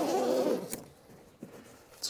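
Zipper on a hard-shell kayak carry case being pulled open, a wavering rasp that stops about half a second in, followed by a single click.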